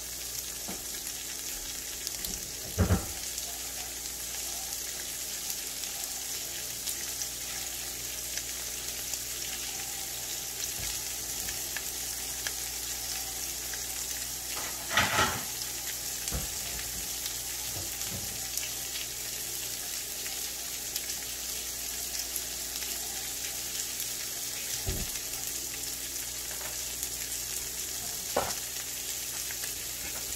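Bratwurst sausages frying in oil in a pan: a steady sizzle, with brief louder sounds about three and fifteen seconds in.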